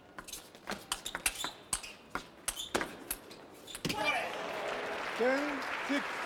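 Table tennis rally: a series of sharp clicks at irregular intervals as the ball strikes the paddles and the table. About four seconds in the point ends and the crowd applauds.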